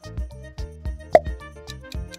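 Background music with a steady beat, and a short cartoon-style pop sound effect about a second in.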